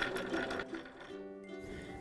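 Electric sewing machine stitching in a quick, even run that fades out about halfway through, followed by soft background music with held notes.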